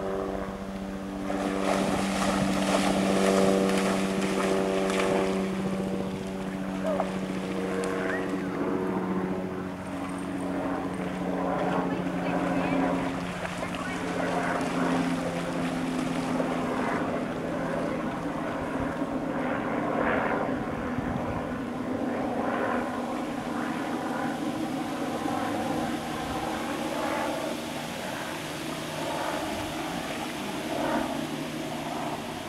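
A young German shepherd splashing and wading through a shallow river as it fetches a stick. The splashing is loudest in the first few seconds, and a steady engine drone runs under it, fading out about halfway.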